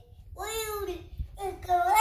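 A toddler singing in a high, sing-song voice: two drawn-out, gliding phrases with a short pause between. A low thump comes about halfway through.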